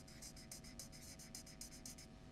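Faint, quick scratching strokes of a marker writing on flip-chart paper, a rapid run of short scratches.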